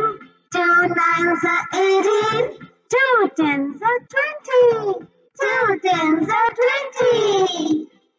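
A child's voice singing the two-times table as a chant-song, phrase by phrase with short breaks between lines, ending the table of two.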